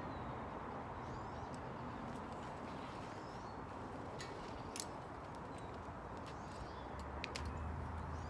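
Outdoor ambience: a steady background hiss with a few faint bird chirps and several small sharp clicks. A low hum rises near the end.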